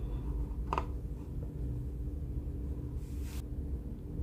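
Quiet room tone with a steady low hum, a short faint click or tap about three-quarters of a second in, and a brief soft hiss near three seconds.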